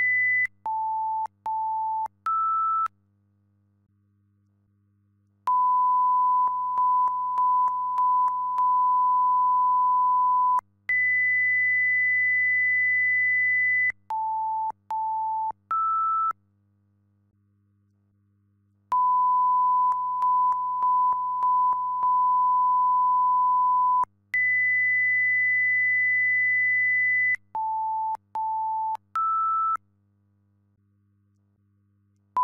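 Electronic beep tones in a repeating sequence: a steady high tone held about three seconds, two short lower beeps and a slightly higher beep, a couple of seconds of silence, then a steady middle tone held about five seconds. The whole pattern repeats roughly every thirteen and a half seconds.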